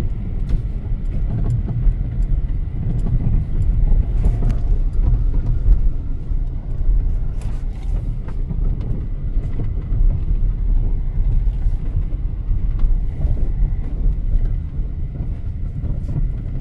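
A car driving, its engine and tyres making a steady low rumble.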